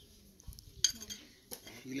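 A short, sharp clink of hard objects knocking together a little under a second in, followed by a duller knock about half a second later, in a pause between a man's words.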